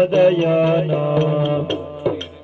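Yakshagana music: a steady drone under a held melodic line that glides between notes, with light, quick metallic strikes over it.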